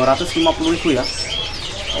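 Caged birds chirping, with short whistled calls sliding up and down in pitch, most of them in the second half. A man's voice speaks briefly at the start.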